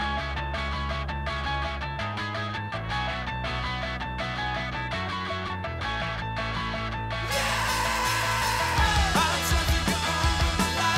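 Rock song instrumental passage: bass notes change about once a second under held guitar chords. About seven seconds in the band comes in louder and fuller, with a falling guitar slide.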